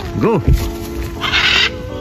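Pet macaws in flight, one giving a single harsh squawk of about half a second near the end. A steady music bed runs underneath.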